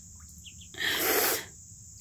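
Muscovy ducklings peeping faintly while they bathe in a water bowl. A short burst of rushing noise, lasting under a second, comes about a second in.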